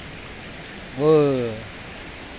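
Steady rushing hiss of a river in flood, with a short spoken word about a second in.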